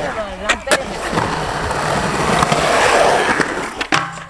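Skateboard wheels rolling on a concrete skatepark, the rolling noise growing louder toward the end, with a few sharp clacks of the board.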